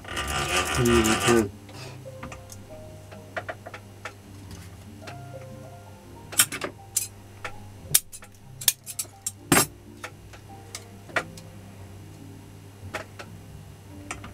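Hand-winding enamelled copper wire into the slots of an angle-grinder armature: scattered light clicks and ticks of wire and tool against the armature's steel core, with several sharper clicks about six to ten seconds in, over a steady low hum.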